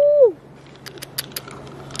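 The end of a cheerful, high-pitched 'woo-hoo' call, then a few faint clicks from fingers working in an opened freshwater pearl mussel.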